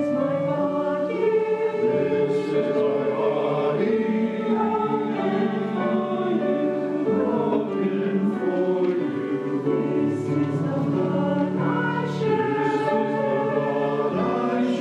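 Church choir singing together, accompanied by piano.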